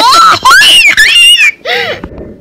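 A toddler squealing with laughter: loud, high-pitched shrieks that glide up and down, with a last short squeal near the end.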